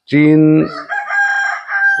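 A rooster crowing: one long, steady, high call held for more than a second, overlapping a man's drawn-out voice at the start.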